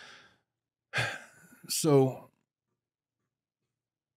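A man's breath at the microphone, then an audible sigh about a second in, leading straight into a single spoken word, "So,".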